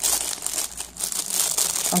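Clear plastic packaging around a pair of tweezers crinkling as it is handled, an irregular rustle that dips briefly about a second in.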